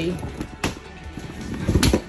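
Rustling and crinkling of a collapsible vinyl pet bathtub being unfolded by hand, with a sharp click about two-thirds of a second in and a louder dull bump near the end.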